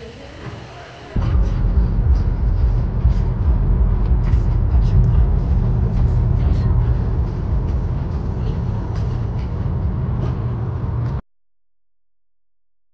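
Road and engine noise of a vehicle cruising on a freeway, heard from inside the cab: a loud, steady low rumble that starts suddenly about a second in and cuts off abruptly near the end.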